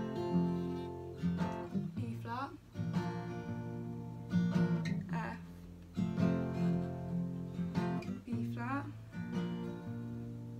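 Acoustic guitar played in a steady picked-then-strummed pattern: a single bass string is picked, then the chord is strummed. It moves between B-flat and F chord shapes, with the chord changing about two seconds in and again about six seconds in.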